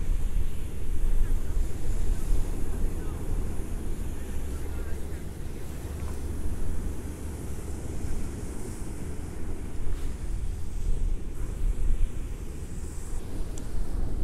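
Wind buffeting a phone's microphone: a low, rumbling noise that swells and fades.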